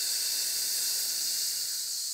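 A steady, high-pitched hiss with no distinct events, easing slightly near the end.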